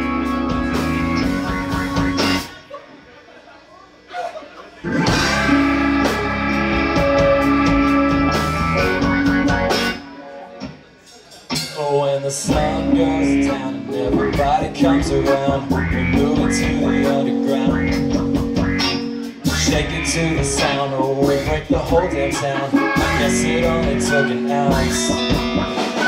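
Live band music: two electric guitars, drums and keyboard playing together. The band stops dead twice, about two seconds in and again about ten seconds in, and comes back in each time.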